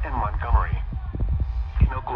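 A weather radio's small speaker playing a broadcast voice, over a steady low hum, with low thumps about half a second in and near the end.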